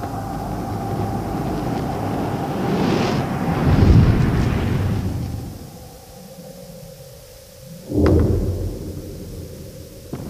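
Film soundtrack of a boxing knockdown: a low rumbling swell with a thin held tone builds to a peak about four seconds in and then fades away. About eight seconds in comes one heavy hit with a short ring after it.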